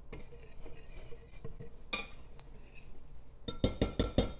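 A wire whisk stirring dry flour in a glass bowl, with faint scraping and light clinks of the wires against the glass. Several sharper clinks come near the end. The whisk is mixing flour, baking powder and salt into self-rising flour.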